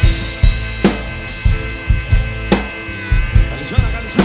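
Acoustic drum kit played live in a steady groove, with a kick drum and a snare backbeat landing a little under a second apart. Cymbals wash over it, and it is played along to a recorded Greek pop backing track whose held instrument tones sound underneath.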